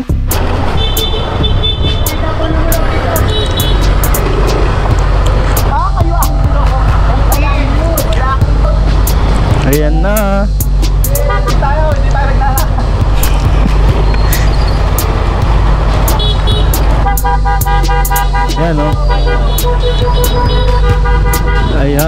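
Street traffic from a motorcycle convoy: steady engine noise with horns honking, a few short toots near the start and a long, loud blast a little past the middle, over shouting voices and music.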